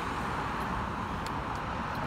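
Steady road traffic noise: an even low rumble with a few faint ticks.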